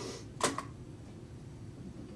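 A single sharp mechanical click about half a second in, from recording equipment being handled on the table, over a steady low hum.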